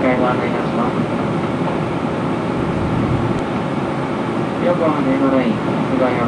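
Steady running noise heard inside a 485-series electric train car as it rolls along the line: an even rumble and hum from the wheels and the car.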